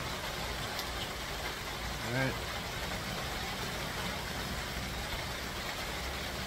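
Steady rain falling, an even hiss with a low rumble underneath.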